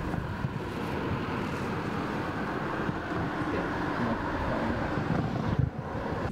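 Steady outdoor noise: wind buffeting the camera microphone over the rumble of road traffic.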